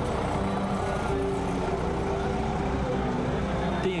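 A trackless tourist road train, built to look like a steam locomotive, runs past with its engine going steadily. A tune of held notes plays over it.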